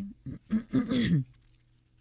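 A woman clearing her throat once, a short voiced rasp lasting under a second, about half a second in.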